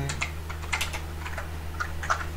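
Typing on a computer keyboard: scattered, irregular keystrokes.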